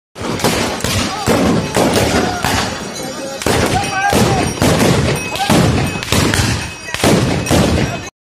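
A rapid volley of gunshots, about a dozen and a half sharp cracks, fired irregularly, with men's voices shouting and whooping between the shots.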